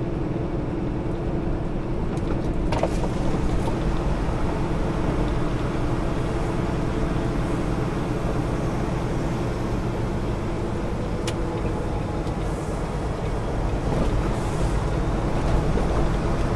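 Semi-truck diesel engine and drivetrain running steadily at low speed, heard inside the cab as a constant drone with a held mid-pitched hum. There are a couple of faint clicks, about three seconds and eleven seconds in.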